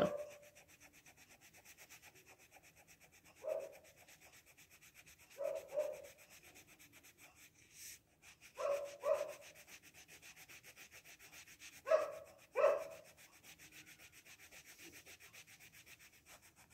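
Brown colouring pencil rubbing on workbook paper as a picture is shaded in: faint and steady, broken by a few brief louder sounds that mostly come in pairs.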